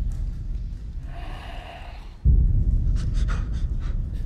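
Trailer sound design: a deep low rumble that comes in suddenly and swells with a heavier hit about two seconds in. A breathy, panting sound sits over it around a second in, and a few short sharp ticks come near the end.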